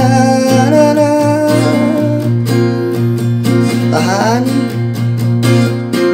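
Steel-string acoustic guitar strummed in a steady rhythm through a slow chord progression (F, A minor, B-flat), with a man's voice singing along without words in long held notes.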